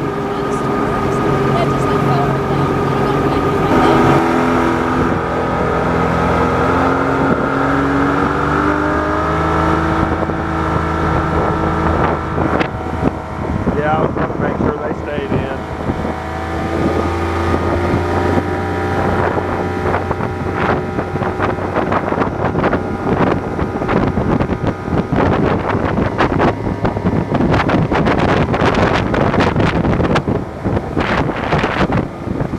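Mercury 115 outboard motor driving an aluminum boat, its pitch climbing over several seconds as the boat speeds up, then running steadily at speed. Wind buffets the microphone through the second half.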